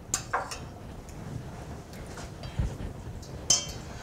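A metal spoon clinking and scraping lightly against an enamelled pot while stirring melting ghee, a few scattered clinks over a faint background.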